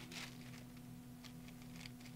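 Faint handling sounds of a clear acrylic stamp block being pressed onto paper and lifted off: a soft rustle near the start, then a few light ticks. A steady low hum runs underneath.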